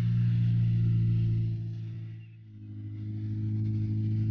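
Fiat Seicento rally car's engine running steadily, heard from inside the cabin. About two and a half seconds in the note drops away briefly, then comes back at a slightly different pitch.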